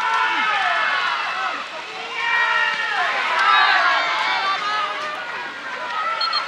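Several voices shouting and calling out over one another, from players and people around the pitch, loudest about halfway through.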